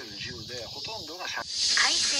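A steady high buzzing of insects in summer woodland, much louder from about one and a half seconds in, with voices talking over it.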